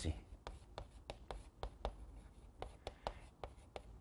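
Chalk writing on a chalkboard: a faint, quick series of about a dozen short taps and scratches as the letters are written.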